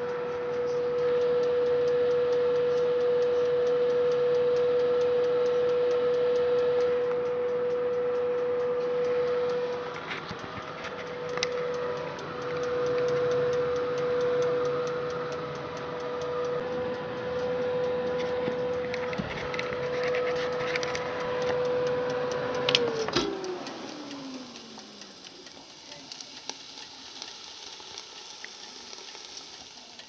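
Halogen convection oven's fan motor running with a steady hum. About three-quarters of the way through it clicks off and the fan winds down, the hum falling in pitch as it slows, and faint regular ticking follows.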